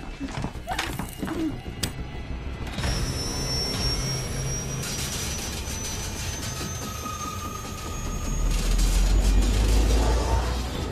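Horror film score: a few sharp hits in the first two seconds, then a sustained eerie drone with a high held tone, swelling into a deep low rumble near the end.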